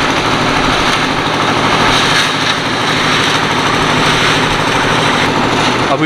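A concrete mixer's small engine running steadily at a constant speed.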